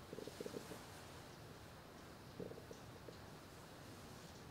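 Quiet room tone with two brief, faint, low rumbling sounds: one at the very start lasting under a second, and another about two and a half seconds in.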